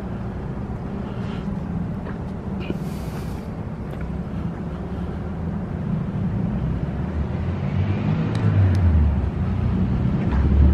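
Steady low rumble, swelling louder near the end, with a few faint clicks.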